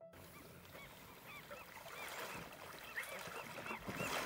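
A flock of birds calling: many short rising-and-falling calls overlapping one another over a steady hiss, the whole growing louder as it fades in.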